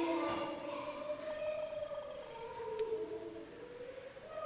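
A man choking up with emotion, holding back tears: a faint, strained, wavering high-pitched vocal whimper in long drawn-out notes that slide slowly up and down.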